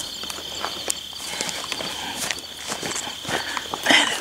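Footsteps crunching and snapping through dry grass and brush at an irregular pace, with a steady high insect trill going on behind them.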